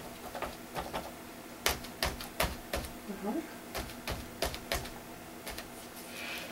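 A paint pouncer dabbing paint through a plastic stencil onto a journal page. It makes about a dozen sharp, irregular taps.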